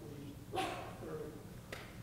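A man's voice, faint and distant in a hall, speaking off the microphone. About half a second in comes one short, sharp sound that is the loudest thing heard, and a small click follows near the end.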